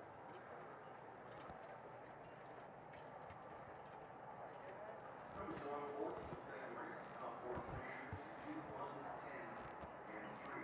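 Faint outdoor track ambience with a steady hiss. About halfway in, nearby voices start talking, with a few low thuds from the hooves of a standardbred trotter being walked on the dirt track.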